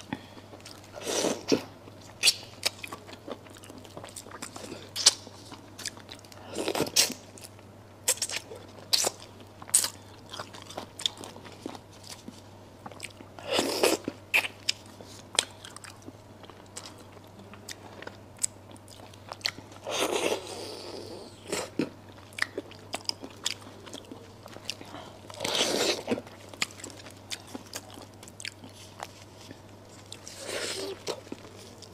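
Close-miked eating of braised duck heads: many small sharp crunches and mouth clicks from biting and chewing meat and cartilage. Louder, longer bursts come about every five to six seconds.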